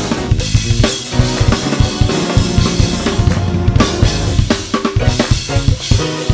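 Drum kit played over a drumless backing track, with busy kick, snare and cymbal strokes running along with the track's pitched instruments. A stretch of very rapid strokes comes about two to four seconds in.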